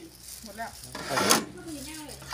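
800-watt electric sugarcane juicer running with a low steady hum, with a brief scraping rustle about a second in as cane passes through the rollers. A quiet spoken remark sits underneath.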